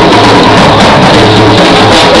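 Live band playing very loud, with the drum kit and its cymbals close at hand.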